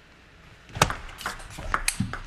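Table tennis ball struck and bouncing in a serve and the start of a rally: a quick series of sharp clicks of the ball off the rubber-faced paddles and the table, starting a little under a second in, the first hit the loudest.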